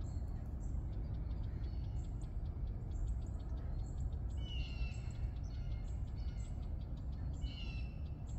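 Wild birds calling: a series of short, high calls and chips, with two louder descending calls about halfway and near the end, over a steady low rumble.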